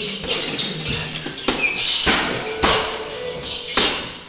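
Gloved punches and kicks striking a hanging heavy bag, a series of sharp thuds about half a second to a second apart, the hardest near the end.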